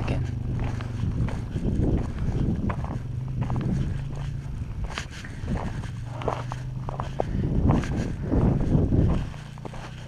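Footsteps crunching on loose gravel, with irregular gritty ticks over a steady low hum that drops away near the end.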